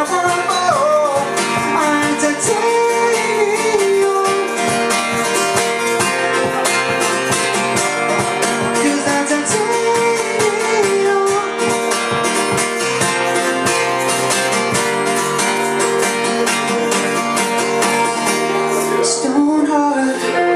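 Two acoustic guitars strummed together in a steady rhythm, played live, with a sung melody over parts of it. Shortly before the end the strumming breaks off briefly before the next chord.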